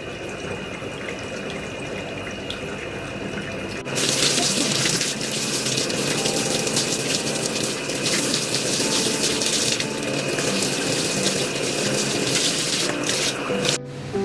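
Water running from the bathtub tap through a hand-held hose sprayer onto hair, rinsing out bleach. It starts as a quieter steady rush and becomes a louder, even gush about four seconds in.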